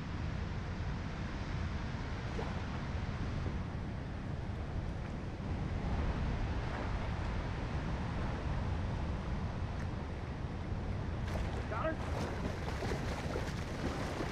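Wind buffeting the microphone over rushing river current: a steady low rumble with an even watery hiss. A few short crackles come in over the last few seconds.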